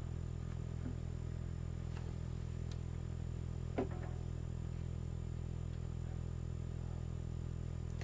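A steady low hum with faint background noise, and one faint short tick about four seconds in.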